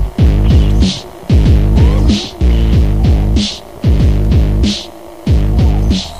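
Electronic dance music from a tekno mix. Heavy, distorted bass notes slide down in pitch, repeating a little more than once a second with short gaps between them, and a bright noisy hit comes near the end of each note.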